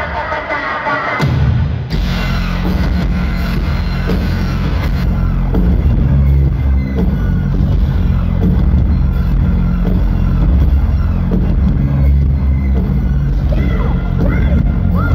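Loud live band music recorded from within the crowd, with heavy bass and a driving beat. The low end drops out briefly near the start, and the full band comes back in about two seconds in.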